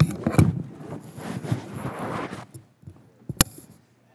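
Microphone handling noise: rustling, bumps and scraping as a conference microphone is moved over. A single sharp click comes about three and a half seconds in.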